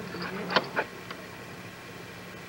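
Two sharp clicks close together about half a second in, then steady hiss and low hum from an old videotape recording.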